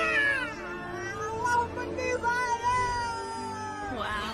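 Cat-like meowing over background music: a short meow falling in pitch at the start, then a long drawn-out meow held for about two seconds that sinks slightly at the end.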